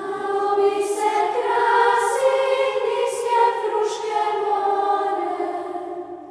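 Children's church choir singing a slow song in Serbian with long held notes, its hissing consonants coming about once a second.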